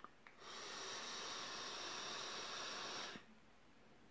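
A drag of about three seconds on a Vaporesso Switcher box mod fitted with an Aspire coil head: a steady hiss of air drawn through the firing atomizer, starting about half a second in and cutting off sharply.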